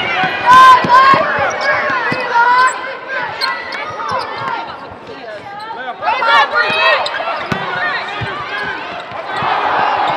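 A basketball bouncing on a hardwood court during play, with players' voices calling out.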